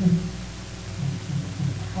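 A man's voice speaking low and indistinctly over a steady low hum.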